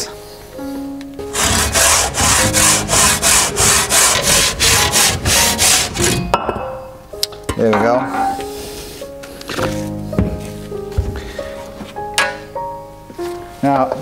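A hand saw with hardened teeth cutting an aerated concrete (Ytong) block in about a dozen quick, even strokes, two to three a second, for about five seconds, then stopping. Guitar background music plays under it.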